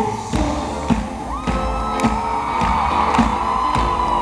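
A band playing live: drums keeping a steady beat of about two strokes a second under long held notes, with the crowd cheering over the music.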